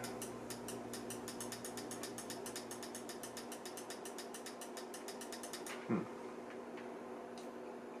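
Fast, even mechanical ticking, about nine clicks a second, that stops abruptly a little before the end, over a steady low hum.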